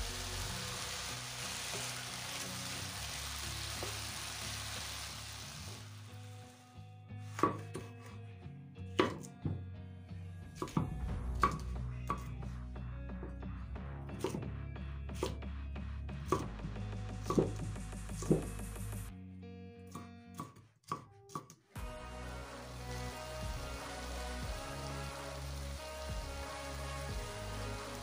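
Chicken and onion frying in a pan, sizzling with an even hiss. Then a kitchen knife chops a bell pepper on a wooden cutting board, about one knock a second. The sizzling returns near the end, with background music throughout.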